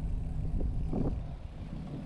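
Steady low rumble of wind on the microphone mixed with tyre and road noise from a bicycle being ridden along a paved street, with a couple of soft bumps about half a second and a second in.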